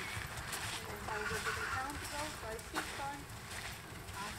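Faint voice talking at a distance over low wind rumble on the microphone, with a couple of soft clicks.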